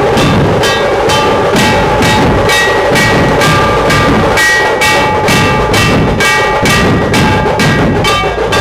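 Procession drums playing a fast, steady, loud beat of about three strokes a second, with ringing pitched tones running over the beat.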